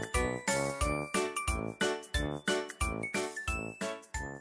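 Cheerful children's background music: bright tinkling, bell-like notes over a bouncy, even beat of about three notes a second.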